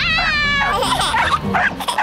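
Cartoon puppy yipping and whining: a high whine that falls over the first half-second, then a quick string of short yips.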